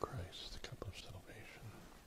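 Quiet whispered speech with a few small clicks.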